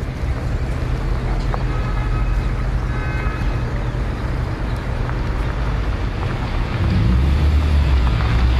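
A car driving: steady engine and road noise fading in, with the low engine hum growing stronger about seven seconds in.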